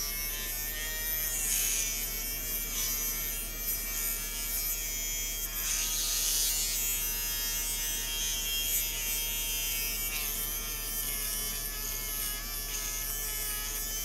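Cheap USB-rechargeable mini rotary electric shaver running against face stubble: a steady buzz that shifts slightly in pitch a few times. It hardly shaves at all.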